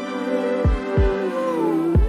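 Indie R&B music: sustained chords with deep kick-drum thumps, three of them, and a held note that glides down in pitch near the end.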